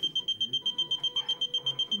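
A prototype ventilator's alarm beeping rapidly at one high pitch, about seven even beeps a second. It is the disconnection alarm, set off because the patient's mask has come off.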